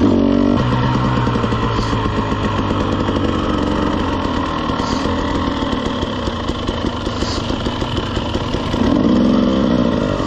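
Dirt bike engine running at low trail speed close to the microphone, with a throttle blip right at the start and the engine swelling louder again near the end as the bike slows.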